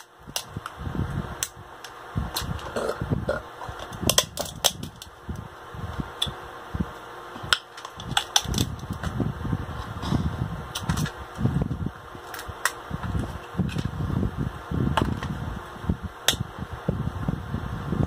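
Close-up eating sounds: many sharp clicks and cracks as a boiled claw's shell is broken and picked apart by hand, over wet chewing and lip smacking.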